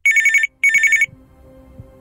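Telephone ringing in the double-ring pattern: two short trilling rings in quick succession, then a pause with a faint low hum underneath.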